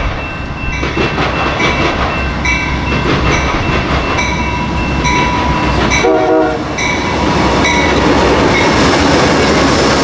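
Amtrak GE P42DC diesel locomotives passing close by, their engines rumbling, with the locomotive bell ringing about once every 0.8 seconds and a short horn blast about six seconds in. After the locomotives, the steady noise of the passenger cars' wheels on the rails takes over and grows louder.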